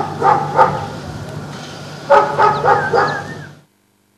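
Dogs barking at an animal shelter: two barks, then after a pause a quicker run of about four, over a steady low hum; the sound cuts off shortly before the end.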